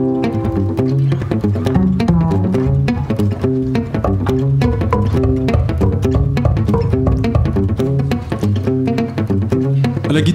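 Gypsy-jazz trio playing live: a double bass plucked prominently in a walking line, under two acoustic guitars strumming a percussive rhythm.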